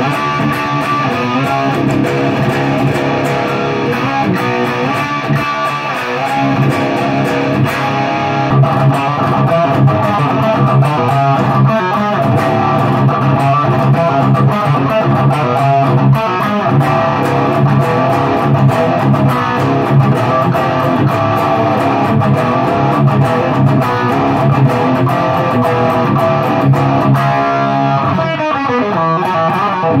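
Electric guitar, a Gibson Les Paul, played with a distorted tube-amp tone. The first part is through an Elmwood Modena M90 head; about eight seconds in there is a short break and the playing goes on through an Engl Blackmore head.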